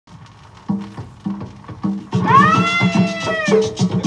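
Cumbia record playing on a turntable, the opening of the song: low notes pulse about once every half-second, then about halfway through a long high note slides up and is held for about a second and a half over a fuller beat.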